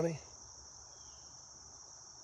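Steady high-pitched chorus of insects in the trees, a constant drone with no breaks.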